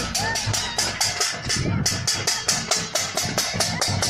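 Steel thali plates beaten rapidly and steadily to scare off a locust swarm, about six metallic strikes a second, with voices shouting alongside.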